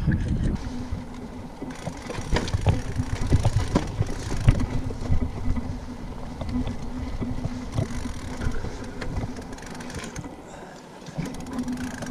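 Mountain bike riding down a rocky trail: knocks and rattles from the tyres and frame over stones, wind rumble on the microphone, and a steady low hum from about a second in.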